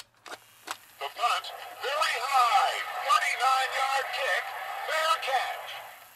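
Mattel Talking Monday Night Football sportscaster voice unit playing a small battery-driven play record: a click as the lever is pushed, a few crackles, then a recorded announcer calling a play through the toy's small speaker, the voice thin and tinny with no bass.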